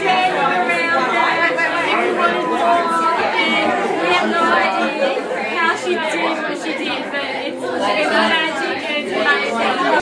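Several people talking at once in a continuous party chatter of overlapping voices.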